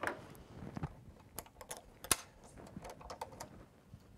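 Faint, irregular light clicks and rustling as hands work fabric and small parts at an embroidery machine while it is being fixed, not stitching.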